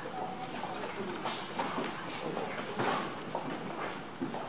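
Low murmur of children's and audience voices, with scattered knocks and shuffling, a couple of them more distinct about a second in and near three seconds in.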